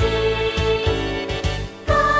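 A children's song playing: held melody notes over a bass line, dipping briefly just before the end.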